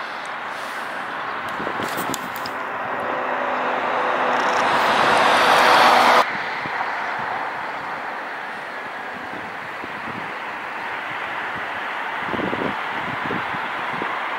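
Road traffic: a vehicle's tyre and engine noise builds up for several seconds, then cuts off suddenly about six seconds in. A steadier, quieter hum of traffic and open air follows.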